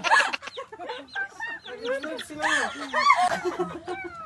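A chicken held in a person's hands clucking in a string of short calls.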